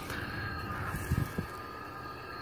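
Halloween lantern decoration playing its sound effect: a few steady, eerie held tones. Two short low thumps come a little past the middle.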